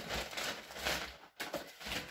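Paper carrier bag rustling as a hand rummages inside it, in uneven surges with a brief break about a second and a half in.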